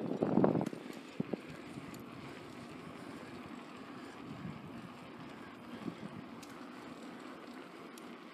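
Wind buffeting the handheld camera's microphone in a loud gust for about the first half second, then a steady low rush of outdoor wind noise.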